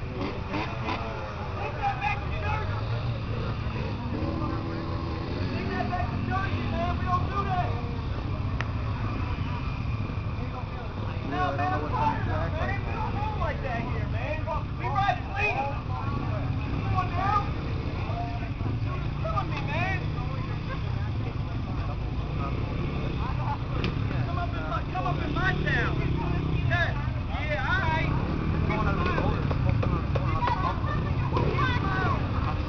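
Motorcycle engines running out of sight, their pitch climbing and dropping again several times as they rev and shift, mixed with people talking that can't be made out.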